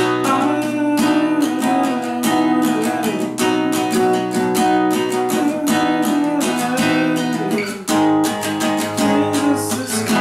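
Acoustic guitar strummed in a steady rhythm through changing chords, with a short break a little before eight seconds in.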